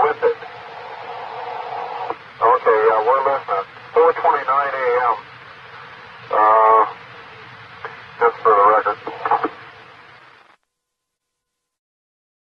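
Muffled voices over a two-way radio, taped off the radio, with hiss throughout and a steady hum that swells over the first couple of seconds. The recording cuts off shortly before the end.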